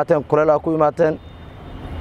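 A man speaking for about the first second, then a low rumble that grows louder toward the end.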